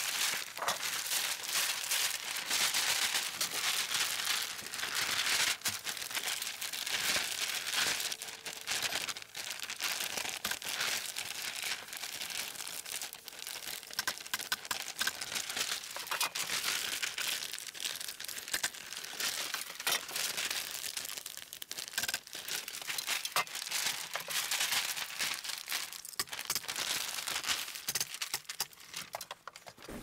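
Large sheet of 6 mil polyethylene vapor barrier crinkling and rustling as it is draped and handled, with many sharp crackles, busiest in the first ten seconds or so.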